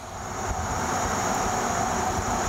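Steady noise of a passing vehicle that swells over the first half second, then holds at about the level of the nearby speech.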